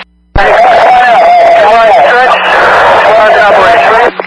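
Loud, harsh two-way radio transmission over a fire department scanner. After a short dead gap it keys up with a click, and a voice is nearly buried under heavy static and a wavering whine, too garbled to make out.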